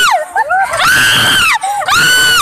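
A woman screaming on an amusement ride: long high-pitched screams that rise, hold for about a second and drop away, with a short squeal between them.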